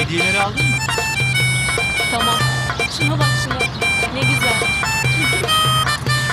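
Upbeat harmonica tune: reedy melody notes changing quickly over a steady, pulsing bass.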